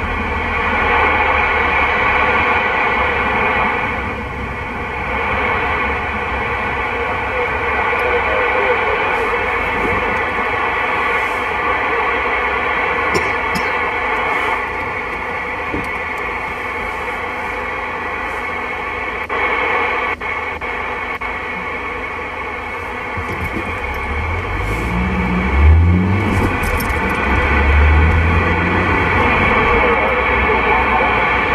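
A President Lincoln II+ CB radio receiving on channel 37 in AM gives a steady hiss of static, with faint steady whistling tones running through it. About 24 seconds in, a stronger low buzz joins the hiss.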